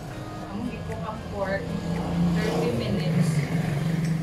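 A passing motor vehicle's engine, swelling over the first two seconds and staying strong toward the end, with voices over it.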